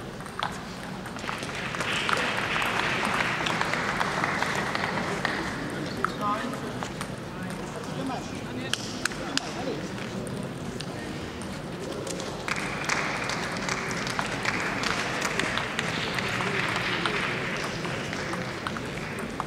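Crowd applause in a large sports hall, swelling about a second in and again from about twelve seconds, over a murmur of voices, with scattered sharp clicks of table tennis balls.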